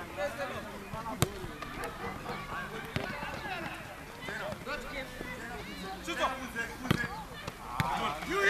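A football being kicked on a dirt pitch: a handful of sharp thuds, the loudest about a second in and others near three and seven seconds, over the distant shouts and calls of players.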